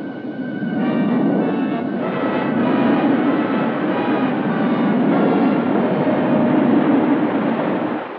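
Steady roar of a jet aircraft in flight and the air rushing past as an ejection seat falls away from it, with sustained film-score music faint underneath.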